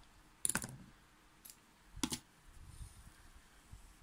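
A few sharp, light clicks and taps from a crochet piece and a crochet hook being handled on a tabletop: the loudest about half a second in, another about two seconds in, and a few fainter ones.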